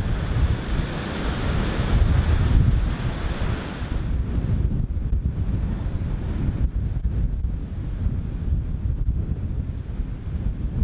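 Wind buffeting the microphone in gusts over the surf of a rough sea breaking on the shore. About four seconds in, the hiss of the surf falls away, leaving mostly the low rumble of the wind.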